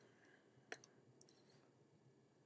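Near silence: room tone with a few faint clicks, one sharper about three quarters of a second in and a few softer ones after it.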